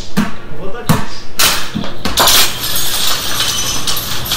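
A knock, then glass shattering and pieces clinking down onto a hard floor. This is a ceiling light broken by a thrown exercise ball, heard in the clip's own audio.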